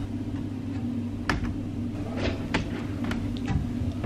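A steady low hum throughout, with a few faint clicks.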